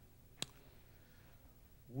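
Near-silent room tone broken once by a single sharp click about half a second in.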